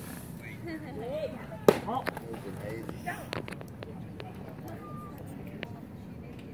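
A single sharp pop about two seconds in, a pitched baseball smacking into the catcher's mitt, followed by a few fainter clicks, with spectators talking around it.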